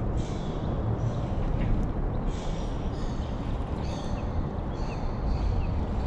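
A baitcasting reel (Daiwa CR80) being cranked through a retrieve, its gears whirring faintly in short spells, over a steady low rumble.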